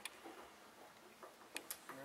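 Near silence: room tone, with a few faint, short clicks in the last half second.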